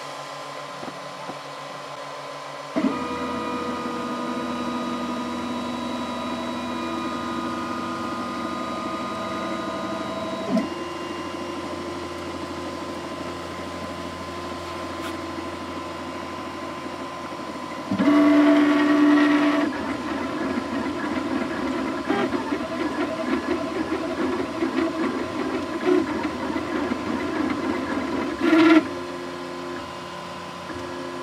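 Desktop FDM 3D printer running: about three seconds in, a steady pitched hum sets in, and past the middle its stepper motors whine through a louder burst of movement, then keep up a wavering, pitched whir as the print runs. A brief louder burst comes near the end.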